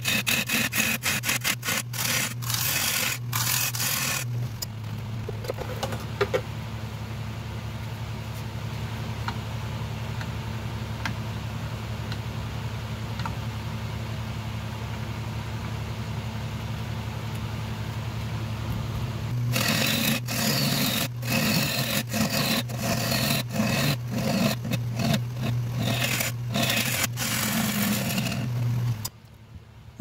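A bowl gouge cuts the inside of a spinning shoestring acacia bowl on a wood lathe, making repeated scraping strokes over a steady low hum. The cutting stops for a long stretch in the middle, leaving only the hum, then resumes and cuts off suddenly about a second before the end.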